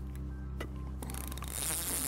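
Background music with steady low held notes. From about halfway there is a fast, zipper-like rasp from the big spinning reel on the carp rod as it ratchets.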